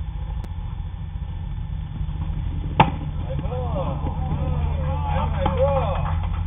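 A baseball smacks into the catcher's mitt with one sharp pop about three seconds in: the pitch is ball four on a full count. Players' voices then call out over a steady low rumble.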